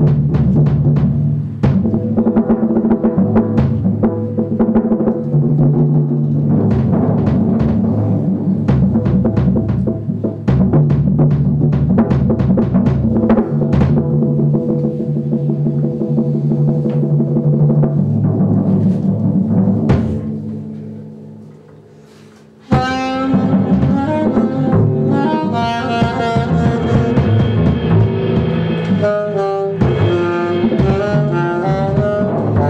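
Live jazz: drum kit playing busily with double bass for about twenty seconds while the alto saxophone rests, fading away; then alto saxophone, double bass and drums come in together suddenly and play on to the end.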